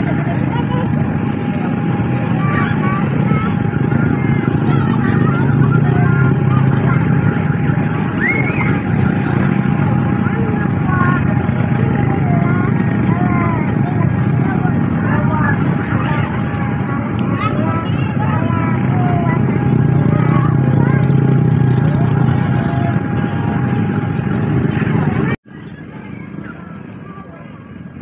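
A young girl's voice softly chanting sholawat over the loud, steady drone of a nearby inflatable's electric air blower. About 25 seconds in the sound cuts to a much quieter background.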